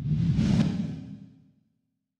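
Whoosh transition sound effect: a single swell that peaks about half a second in and fades out by about a second and a half.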